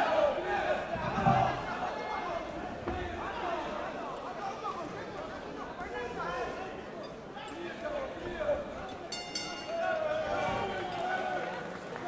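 Many voices shouting and calling over each other in an arena crowd during the closing seconds of a kickboxing bout. A brief sharp high-pitched sound comes about nine seconds in.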